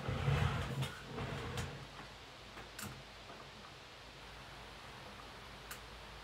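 Rustling and soft knocks of someone moving about and handling things, louder in the first second or so, with a few single sharp clicks, then faint room tone.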